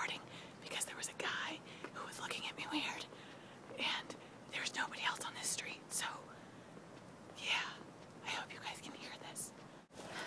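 A woman whispering close to the microphone, in short breathy phrases with pauses between them.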